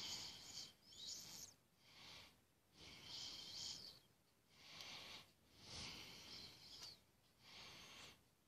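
Faint breathing through the nose close to the microphone, a soft hiss of breath in and out about every second.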